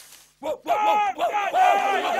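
A chorus of cartoon creature voices whooping and yelling together, several at once, starting about half a second in after a brief hush.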